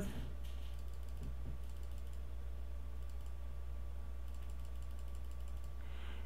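Faint, quick clicks at a computer, in short runs, as an on-screen button is clicked over and over, over a steady low electrical hum.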